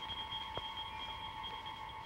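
Eerie sustained high tones, several notes held together as a spooky score effect for a séance, with the highest note dropping out near the end.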